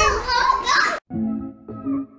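Excited voices and laughter that cut off suddenly about a second in, followed by light music of plucked guitar notes.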